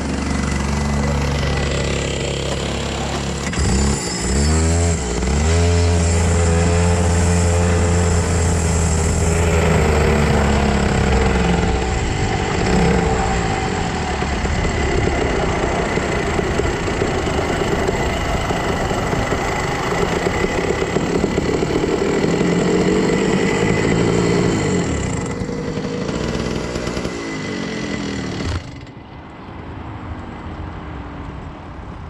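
Rental go-kart engine heard from the kart itself, running hard with its pitch rising and falling as the throttle opens and eases through the corners. Near the end it drops sharply to a much quieter level as the kart slows into the line of stopped karts.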